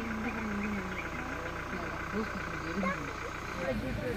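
Steady low hum of a vehicle engine running, with faint voices talking quietly and a steady fine pulsing chirr of insects.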